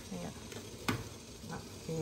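Two sharp clicks of a glass lid on a steamer pot, about a second apart, over a steady faint hiss from the pot as it steams.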